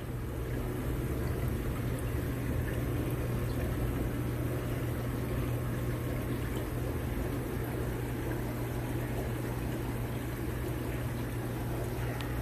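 Aquarium equipment running in a room full of fish tanks: steady trickling, bubbling water over a constant low hum.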